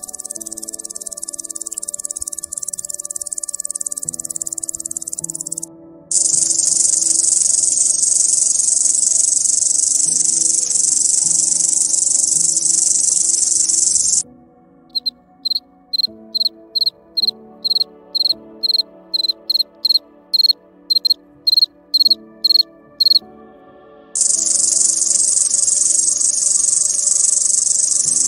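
Crickets stridulating: a high, continuous buzzing trill that grows louder, then a louder continuous trill. Midway this gives way to a run of separate short chirps, about two a second for some nine seconds, and then the continuous trill returns. Soft background music plays underneath.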